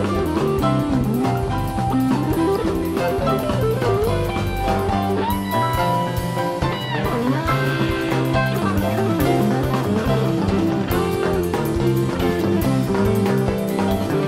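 Live rock band playing an instrumental passage: electric guitar leading over bass, drum kit and keyboards, with a held, bending guitar note about halfway through.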